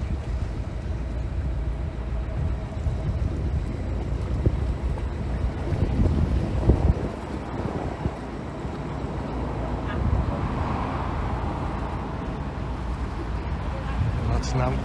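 Narrowboat's engine running steadily as the boat moves along, with wind on the microphone and a gust about six seconds in.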